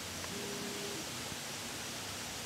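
Quiet steady background hiss of outdoor ambience, with a faint brief hum lasting well under a second near the start.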